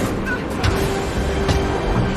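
Film soundtrack mix: a low, dense rumble with music score over it. A held note comes in about half a second in, and two sharp hits land at about half a second and a second and a half in.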